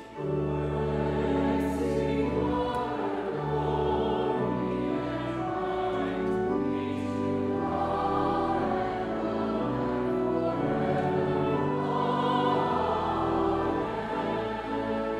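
A church congregation singing a hymn together, accompanied by an instrument holding long, steady bass notes and chords. The singing is continuous, with a short break right at the start.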